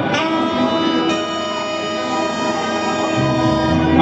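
A sustained chord held on a live band's keyboard, with a low bass note coming in about three seconds in.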